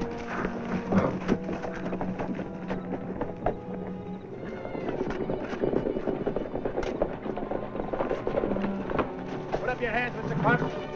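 Background film music with horses' hoofbeats, irregular knocks and clops under the held notes of the score.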